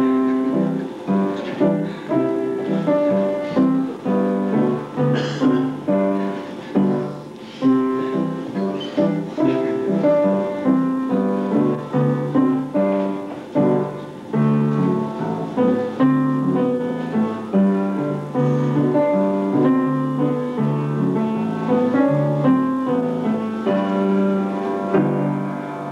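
Piano playing a tune: notes are struck and left to ring over a moving bass line.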